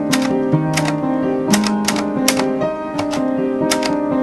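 Typewriter keys clacking in an uneven run of about a dozen strikes, over music of held notes that change pitch every second or so.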